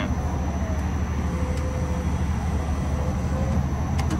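Steady low mechanical hum and rumble, with a faint steady tone above it, from running machinery.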